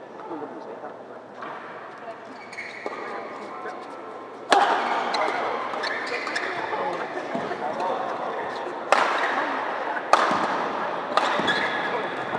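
Badminton rally: sharp racket-on-shuttlecock hits, the loudest about four and a half seconds in and several more in the last few seconds, over the murmur of a crowd of spectators.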